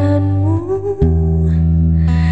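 A woman's voice holds a sung note that slides upward, over a strummed acoustic guitar. A fresh guitar chord comes in about a second in.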